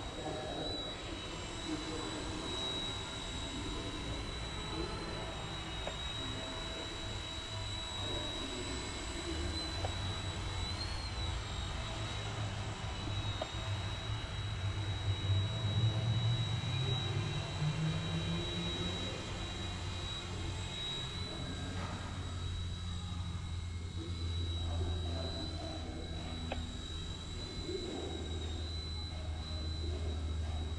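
Eachine E129 micro RC helicopter in flight: a steady high-pitched motor whine over a low rotor hum. About halfway through, the hum rises in pitch and grows louder for a few seconds, then settles back.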